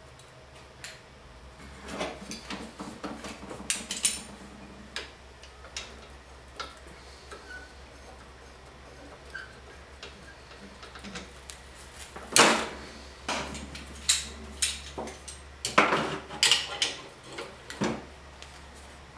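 Metal clanks and clicks of locking C-clamps being set down and snapped shut on a homemade sheet-metal bead-forming jig on a steel workbench. They come as scattered knocks, the loudest about twelve seconds in, with a run of them near the end.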